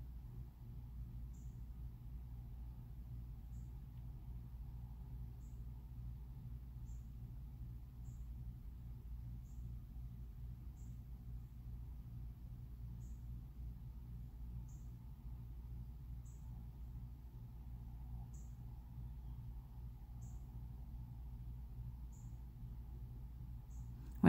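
Quiet room tone: a steady low hum with faint, short high-pitched chirps repeating about every one and a half to two seconds.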